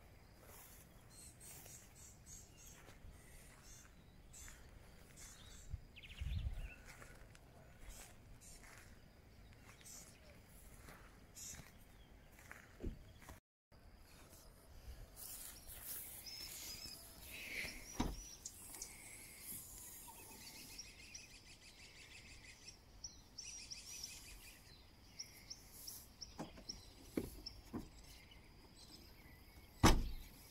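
Faint outdoor ambience with scattered bird chirps in the second half, and a few brief knocks, the loudest about eighteen seconds in.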